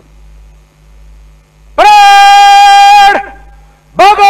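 A police parade commander's drill command: one loud, long-drawn shouted word held on a steady pitch for over a second, starting about halfway through and dropping in pitch as it ends. Before it, only a low steady hum.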